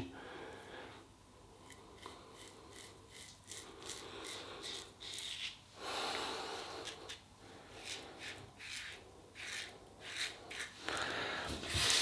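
1966 Gillette Superspeed double-edge safety razor with a new blade scraping through lathered stubble: a faint run of short, crisp strokes, several a second in uneven bursts.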